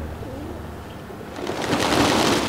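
Feral pigeons cooing softly. In the second half a louder rushing noise builds up.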